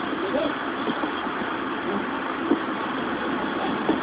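Steady background noise from an outdoor scene, with faint distant voices and a single soft knock about two and a half seconds in.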